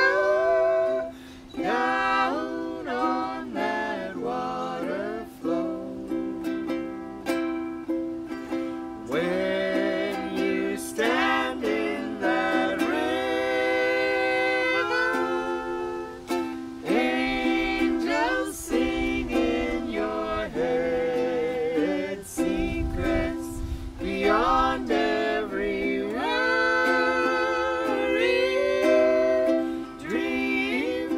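Several voices singing a song together, accompanied by a ukulele.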